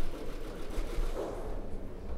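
Indistinct voices murmuring in a large room over steady low room rumble, with no single clear event.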